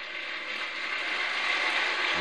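Congregation applauding, the clapping growing louder.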